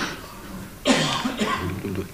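A man coughs once about a second in, a sudden harsh burst with a short voiced sound trailing after it.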